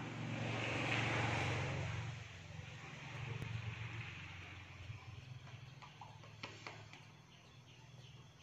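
Low rumble of a passing vehicle that swells to its loudest about a second in and then slowly fades away, with a few faint clicks later on.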